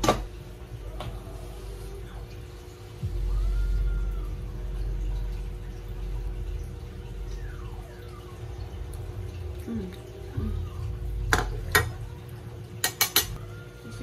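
A metal fork clinking against a ceramic plate, a few sharp clicks and then a quick cluster of them near the end, over a steady hum.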